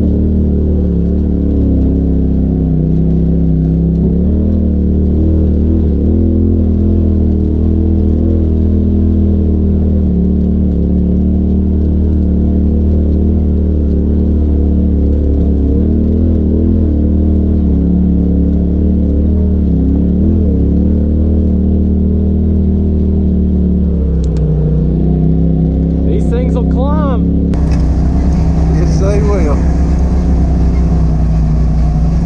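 Side-by-side UTV engine running at low, fairly steady revs with small rises and falls as the machine crawls over rocks, heard from inside the open cab. Near the end the sound cuts to another UTV's engine, with a few brief revs.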